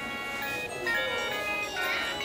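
Electronic melody played by a musical Christmas village display with a toy train, stepping through short steady notes.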